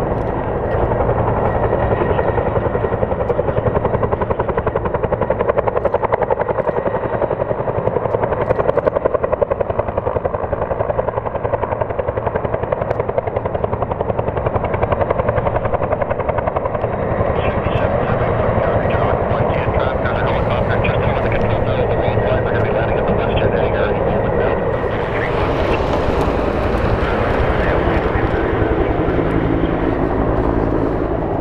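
Bell 212 helicopter with a two-bladed main rotor and a PT6T-3 Twin-Pac turboshaft, flying past with a steady rotor beat and turbine noise. The sound grows brighter and hissier in the last few seconds.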